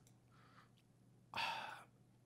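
A man's single audible breath into a close microphone, about half a second long and a little over a second in, against otherwise quiet room tone.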